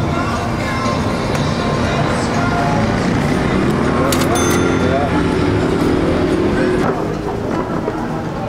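Busy street ambience of people talking, with music playing and some traffic underneath.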